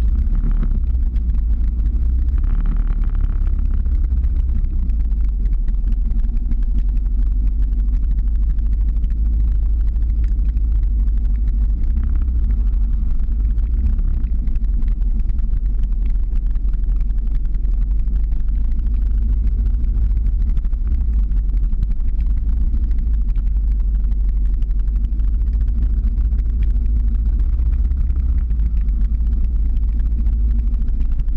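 Steady low rumble of a slow-moving car's engine and tyres on the road, heard from the camera vehicle driving uphill.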